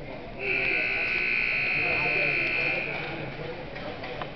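Ice rink scoreboard buzzer sounding one steady, loud blast of about two and a half seconds, marking the end of the hockey period.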